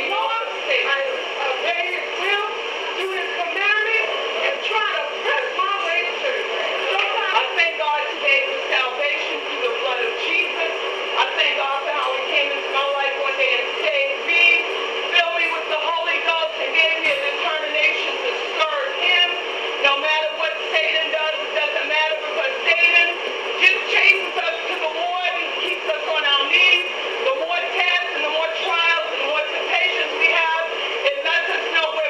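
People's voices talking over one another with no clear words, sounding thin, with no low end.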